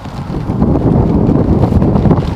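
Wind buffeting the microphone: a loud, low rumbling noise that swells about a third of a second in and then holds.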